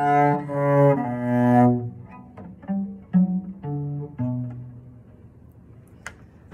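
Solo cello played with a bow: a melody of sustained notes, loud and long for the first two seconds, then a run of shorter, softer notes that stops about five seconds in.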